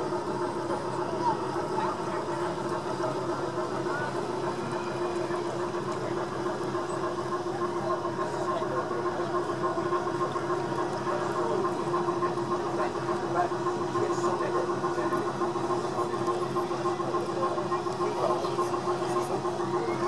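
A steady mechanical hum holding one pitch throughout, under the indistinct chatter of people talking in the background.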